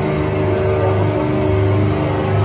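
Live heavy metal band with electric guitar, bass guitar and drums holding a low, sustained chord, with one bright crash-like hit right at the start.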